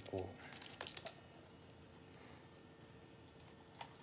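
Faint typing: a quick run of key taps in the first second, then a few isolated taps near the end, as a search for 'tobacco health' is typed in.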